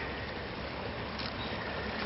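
A steady, even rushing noise with no distinct events: outdoor background noise, without speech.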